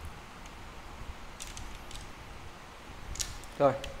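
Faint handling sounds of a carbon fishing rod: a few light clicks about a third of the way in and again near the end, over a low steady background. A short spoken word follows.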